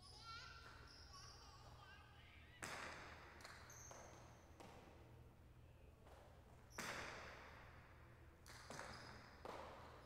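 Jai alai pelota striking the court walls during a rally: sharp cracks that echo through the big hall. The two loudest come about two and a half seconds in and near seven seconds, with lighter knocks between them and a quick cluster near the end.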